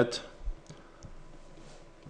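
A few faint clicks of computer input, keys or mouse buttons being pressed, about half a second to a second in, after the last spoken word trails off.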